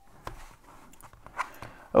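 Faint handling of an opened padlock and steel tweezers, with two light clicks: one just after the start and one about one and a half seconds in.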